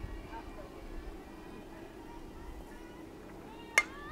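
A softball bat meeting the ball on a bunt, fouled back: one sharp crack near the end, over faint voices from the field.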